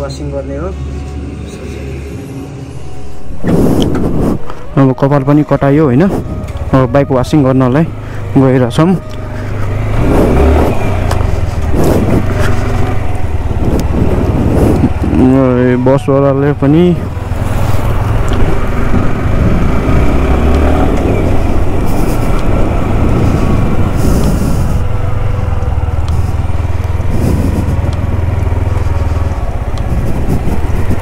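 Sport motorcycle being ridden along a road in traffic: steady engine note with wind and road noise, which starts about three and a half seconds in after a quieter stretch. Twice a loud wavering pitched sound rises over it.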